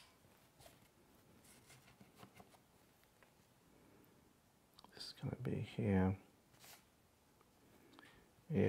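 Faint rustling and small clicks from hands working synthetic fly-tying fibers. About five seconds in, a man's voice gives a short vocal sound of about a second, with smaller bits after it.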